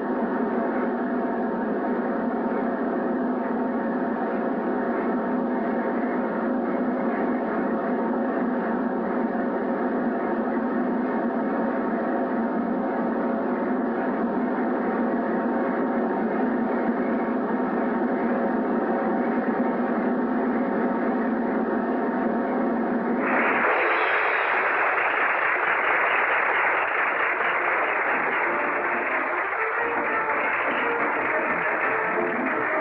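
Snare drum roll held steadily for over twenty seconds, the circus suspense roll before a death-defying aerial stunt. About twenty-three seconds in it cuts off suddenly and a crowd breaks into loud applause.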